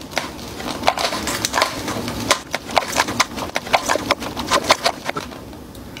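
Close-up crunching and chewing of a crunchy cheese-coated stick studded with corn kernels: a run of irregular sharp crunches and crackles that thins out near the end.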